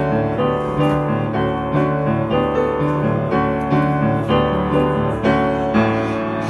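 Piano playing jazz chords in a steady rhythm in a live combo, with no saxophone sounding yet.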